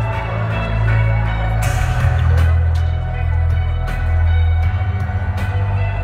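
Live concert music over a PA system, recorded from within the crowd. Deep held bass notes shift pitch twice, under sustained higher tones and a few percussive hits.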